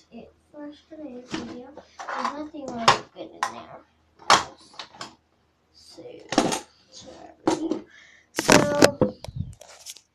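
A girl talking, with small plastic toys and trinkets knocking and clattering as they are packed into a box.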